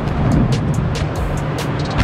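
Background music with a steady beat over the rolling rumble of a stunt scooter's wheels on the ramp, with a heavier low surge about half a second in.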